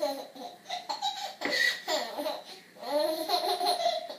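A baby laughing in repeated high-pitched bursts, in two long bouts with a short break just past the middle.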